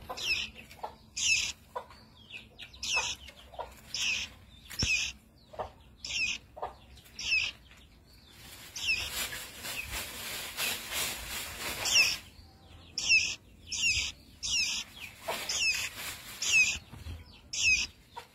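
A young caged songbird calling over and over with short, high, downward-sweeping chirps, about one or two a second, with a stretch of hissing noise for a few seconds around the middle.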